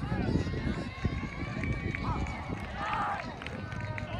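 Wind buffeting the microphone, with distant voices of players calling out on the field, briefly louder about three seconds in.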